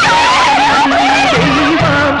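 Loud film soundtrack music: several wavering, bending high melodic lines over a pulsing low beat, starting abruptly just before.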